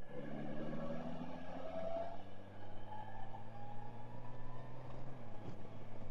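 Honda Gold Wing's flat-six engine running at a steady cruise, with road and wind noise.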